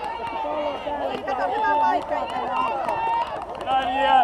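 Several young children's high voices calling and chattering at once, overlapping throughout.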